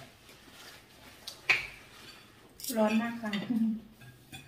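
Forks and knives clinking and scraping on dinner plates as people eat, with one sharp clink about a second and a half in.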